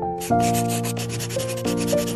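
Outro music holding soft chords with a couple of note changes, under a scratchy pen-on-paper writing sound effect.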